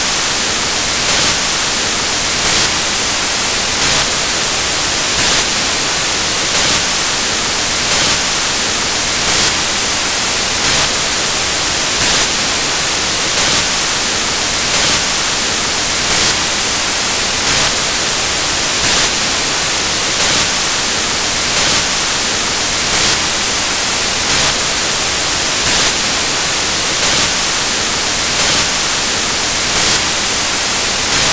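Loud, steady electronic static hiss with a brief louder pulse about every one and a half seconds, and no voice coming through: the audio signal has been lost and replaced by noise.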